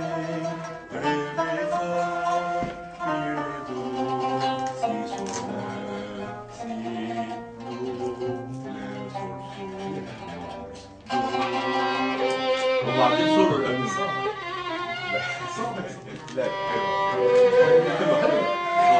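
Qanun solo: a melody of quickly plucked, ringing notes on the zither's strings in Arabic classical style. The playing drops to a quiet moment about ten seconds in, then comes back louder and fuller.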